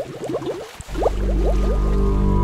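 Cartoon underwater-bubble sound effect: a quick run of short rising bloops. About a second in, a loud, steady low music drone starts and holds.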